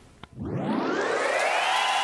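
Edited-in transition sound effect: a small click, then a tone that sweeps up from very low pitch and levels off into a steady held sound, like a recording winding up to speed.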